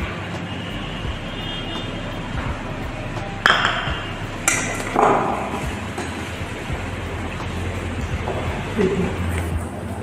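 Wire whisk knocking against a stainless steel mixing bowl while creaming softened butter with icing sugar by hand. A few sharp, ringing pings come between about three and a half and five seconds in.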